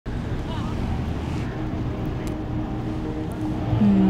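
Steady low rumbling noise, like wind on the microphone, with sustained low musical notes coming in: a faint one from about the middle and a stronger, lower one near the end.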